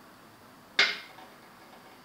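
A steel carriage bolt set down on a glass tabletop: one sharp clink with a short ring about a second in.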